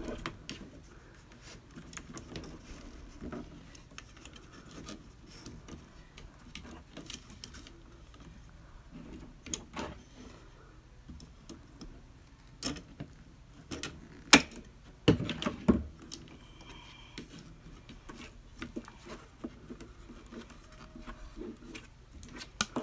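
Handling of baling wire and a cardboard sign box with hand wire snips: scattered light clicks and taps, with one sharp snap of the snips about two thirds of the way through.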